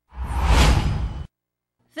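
A whoosh sound effect for a news-bulletin logo transition, a rushing noise over a deep rumble that swells and dies away within about a second.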